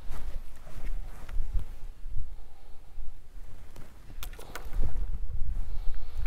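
Wind rumbling on the microphone, with quiet handling sounds of a leather circle being folded and marked with a pencil: light rustles and a few faint clicks, a small cluster of them about four seconds in.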